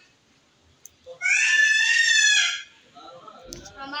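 A child's loud, shrill, high-pitched shriek, held with a slight waver for about a second and a half, starting about a second in.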